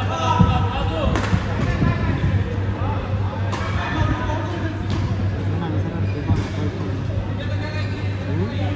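Badminton rackets striking a shuttlecock: a few sharp cracks, about a second in, around three and a half seconds and again after six seconds, over a steady low hum and people talking in the hall.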